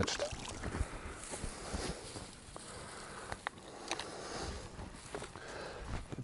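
Faint splashing and trickling of stream water as a plastic bottle with a sock stretched over its mouth is lifted out and drains through the sock, with a few light handling clicks.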